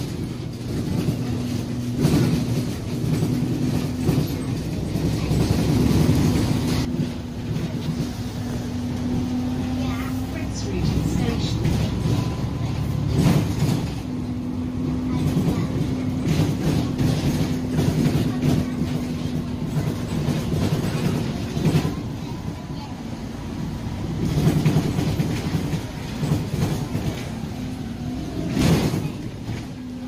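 Inside a moving Alexander Dennis Enviro 400 double-decker bus: the drivetrain runs with a steady drone that drops out and returns in long stretches. Road noise rises and falls as the bus pulls away and slows, with scattered knocks and rattles from the body.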